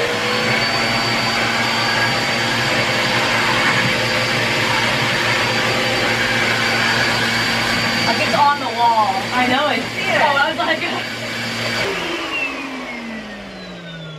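Upright bagless vacuum cleaner starting up and running steadily with a high whine, then switched off about twelve seconds in, its motor winding down with falling pitch.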